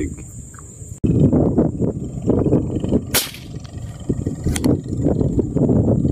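Wind buffeting the microphone, an irregular low rumble, with a sharp crack about three seconds in and a fainter one shortly after.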